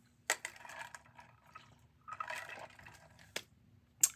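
Tarot cards being handled: quiet rustling, with a sharp click about a third of a second in and another shortly before the end.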